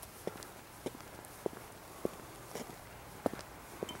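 Faint footsteps of the person filming, walking at an even pace of nearly two steps a second.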